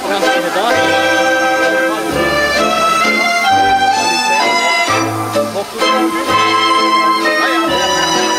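Live band playing dance music, with sustained melody notes over a bass line that steps to a new note about every second.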